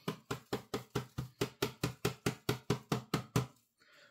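Rapid, evenly spaced clicking, about six sharp clicks a second, which stops about half a second before the end.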